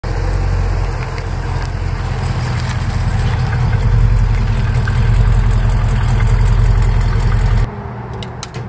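Classic American muscle car's engine running with a steady, deep rumble that grows slightly louder over the first few seconds and cuts off suddenly near the end.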